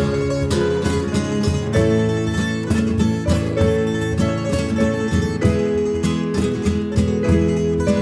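Instrumental break in a Valencian riberenca folk song, played live by a small band: plucked guitars and llaüt (Valencian lute) over piano, bass and percussion, with no singing.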